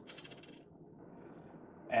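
A set of measuring spoons on a ring jingling briefly as they are handled, in the first half-second, followed by faint room tone.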